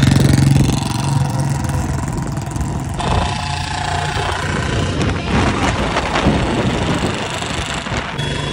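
Royal Enfield Bullet single-cylinder engines running through loud exhausts as the motorcycles ride along the road. The sound is loudest in the first second and changes abruptly about three seconds in.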